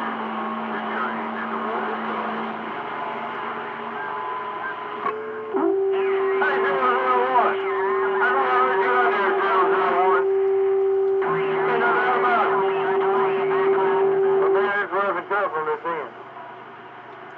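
CB radio receiver on channel 28 (27.285 MHz) putting out garbled, unintelligible voices from distant stations, with steady whistling tones from carriers beating against each other over the talk. It gets louder about five seconds in, when a stronger whistle comes on and holds until shortly before the end.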